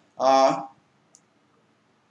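A man's voice says one short word, then silence broken by a single faint, brief click about a second in.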